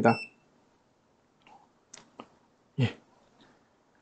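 A short electronic beep from a handheld oscilloscope multimeter at the very start, then a few faint clicks of its buttons being pressed, about a second and a half to two and a quarter seconds in.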